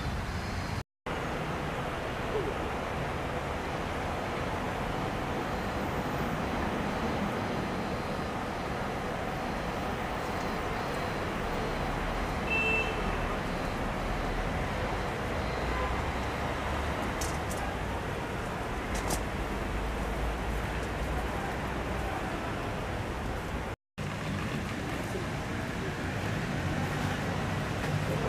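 Steady outdoor background noise with a low rumble like distant road traffic, cutting out completely twice for a moment.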